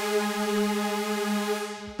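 Arturia MiniFreak V software synthesizer playing one held note of a detuned supersaw lead patch, two SuperWave oscillators through a low-pass filter with the default chorus on. It is one steady pitch with a bright, buzzy top that dulls and fades near the end as the note releases.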